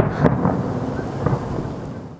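Fireworks bursting: a continuous low rumble of booms with a few sharp cracks, one at the start, one about a quarter second in and one a little past a second.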